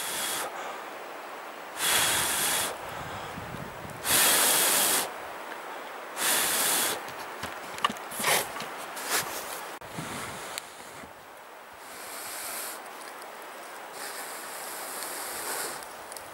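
A person blowing long breaths into a tinder bundle of birch bark and lichen around a glowing ember of tinder fungus, to fan it into flame. Four strong puffs come about two seconds apart, then softer, shorter ones follow in the second half.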